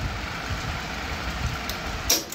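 Cassette tape deck of a Harman HTA-56T amplifier winding the tape at high speed (rewind or fast-forward): a steady mechanical whir from the transport motor and spinning reels.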